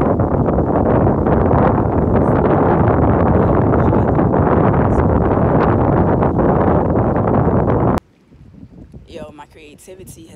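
Strong wind buffeting a phone's microphone on an open shoreline: a loud, steady rumbling roar that cuts off abruptly about eight seconds in.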